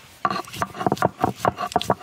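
Garlic and cumin seeds being ground on a shil-nora grinding stone. The stone grinder scrapes back and forth over the pitted stone slab in quick strokes, about six a second, starting just after the beginning.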